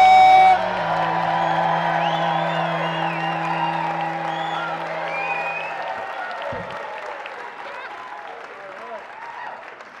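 Audience applauding and cheering, with a few whoops, over walk-on music. The music stops about six seconds in and the applause dies away.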